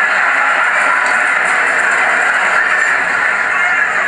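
Large audience laughing and applauding in one steady wash of sound.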